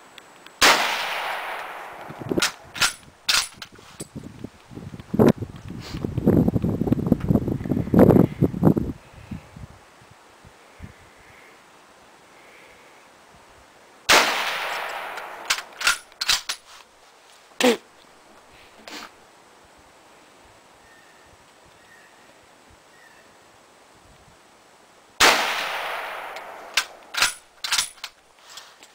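Three .30-06 rifle shots from a bolt-action 1903 Springfield firing M2 ball ammunition, about eleven to thirteen seconds apart, each with a long echoing tail. Each shot is followed by a few metallic clicks as the bolt is worked to eject and chamber the next round, with a few seconds of rustling noise after the first shot.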